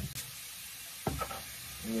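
Bathroom faucet running steadily into the sink basin, with a short click about a second in.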